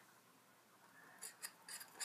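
Near silence, then a few faint clicks and scrapes in the second half: a wooden skewer knocking and scraping in a small paper cup of water and food colouring as it is stirred.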